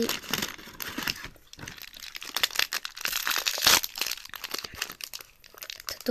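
Crinkling and crackling of a foil-lined plastic snack wrapper being handled, dense crackle that is loudest about three to four seconds in.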